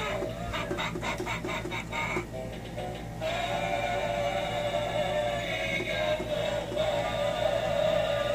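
A homemade motion-triggered skeleton Halloween prop plays its song: a synthesized singing voice with a beat, with sustained sung notes from about three seconds in. A steady low hum runs underneath.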